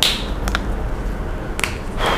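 Three short, sharp clicks from a whiteboard marker being handled: one at the start, one about half a second in and one near the end.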